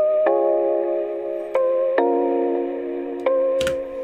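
Chord melody played back through the RC-20 Retro Color plugin's Vinyl 2 preset. Sustained chords change about every second, with subtle distortion that makes them sound old and a little broken, lo-fi. Near the end the playback is cut off with a click.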